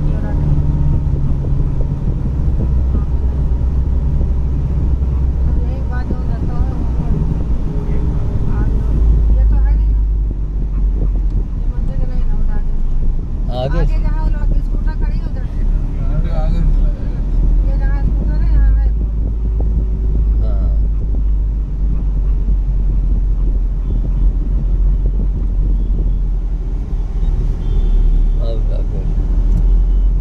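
Car in motion heard from inside the cabin: a steady low engine and road rumble, with snatches of indistinct voices now and then.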